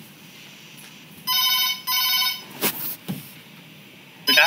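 A telephone ringing, an electronic double ring of two short rings close together about a second and a half in, followed by two sharp clicks.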